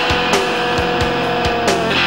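Live rock band playing: one long held note that slides down in pitch just before the end, over a steady drum beat of about four hits a second.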